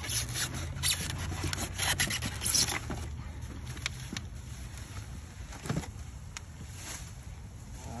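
Plastic-wrapped golf trolley frame pulled out of its foam packing insert: plastic wrap crinkling and foam rubbing, busiest in the first three seconds, then quieter rustling with a single knock near six seconds.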